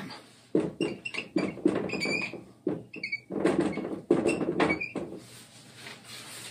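Dry-erase marker writing on a whiteboard: a run of short scratchy strokes with brief squeaks, stopping shortly before the end.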